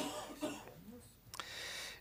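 A brief pause in a man's speech, with a soft, short breathy throat sound close to the microphone in the second half.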